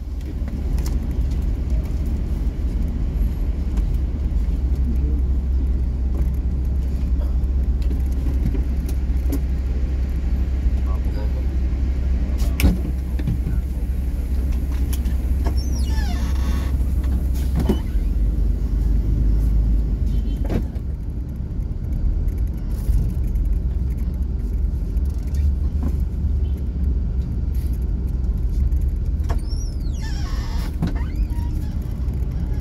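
Steady low rumble of a bus's engine and running gear heard from inside the passenger cabin as it drives, with a sharp knock about twelve seconds in.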